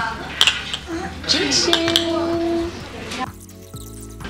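Drinking glasses clinking together in a toast, with a sharp clink about half a second in, followed by light clatter of dishes and cutlery on the table.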